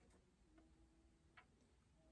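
Near silence: room tone, with a faint click near the start and another, a little louder, about a second and a half in.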